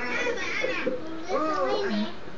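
High-pitched voices talking, with no clear words picked out.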